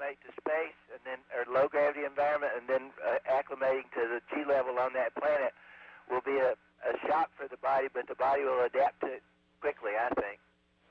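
Speech only: a person talking over a narrow-band space-to-ground radio link, with a faint steady hum underneath.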